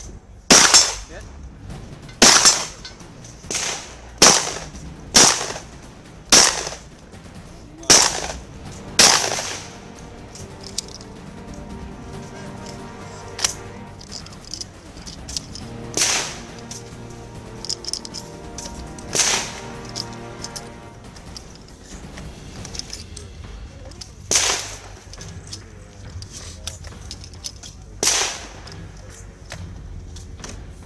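Gunshots from a shooter running a 3-gun stage. A quick string of about seven loud shots comes in the first nine seconds, then single shots follow every few seconds.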